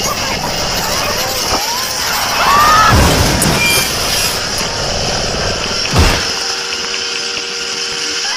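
A dense, distorted collage of layered cartoon sound effects, full of warbling pitch glides. It swells loudest about three seconds in and has a sharp hit about six seconds in, then a few steady tones are held near the end.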